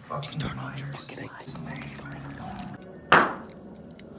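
A single sharp, loud pop about three seconds in, with a short echo: a fart bomb (stink bomb) bag bursting.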